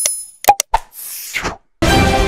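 Animated subscribe-button sound effects: a short bell-like ding, a couple of quick pops or clicks, and a whoosh. Channel theme music starts suddenly near the end.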